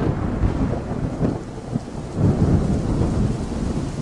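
Rolling thunder over steady rain, a thunderstorm. The rumble swells about a second in and again, loudest, a little after two seconds.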